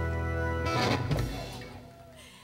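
Live rock band with electric and acoustic guitars holding its final chord, cut off by a closing hit on the drums and cymbals a little under a second in, which then rings out and fades away.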